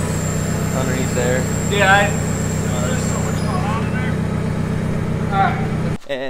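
A steady low machine hum, with faint scattered voices over it. A thin high whine stops about three and a half seconds in.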